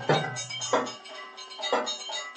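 Temple aarti music: bells and drums struck in a repeating rhythm, with metallic ringing lingering between the strikes.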